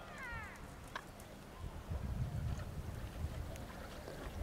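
Faint outdoor ambience: a short falling animal call at the start, a small tick about a second in, then low wind rumble on the microphone through the middle.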